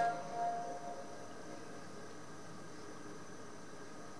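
Video projector's cooling fan running: a faint, steady hum with a few thin whining tones.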